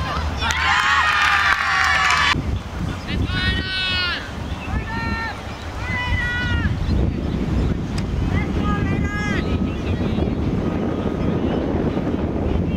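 Players shouting and calling out across an open field: many high voices yelling at once near the start, then single shouts every second or two. Wind rumbles on the microphone throughout.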